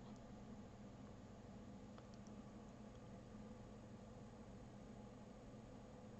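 Near silence: room tone with a faint steady low hum and two faint clicks about two seconds in.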